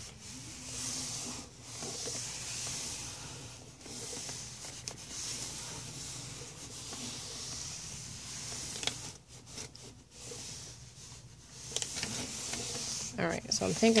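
Clothes iron sliding back and forth over sheets of paper: a soft rubbing swish with each stroke, about one every second or two, with a few light clicks partway through.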